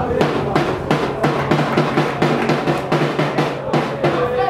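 A drum beaten in a steady, even rhythm, about four beats a second.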